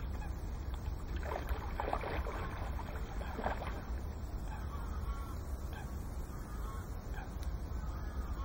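A hooked pike splashes at the surface a few times in the first few seconds. Birds call faintly in the second half, over a steady low rumble of wind on the microphone.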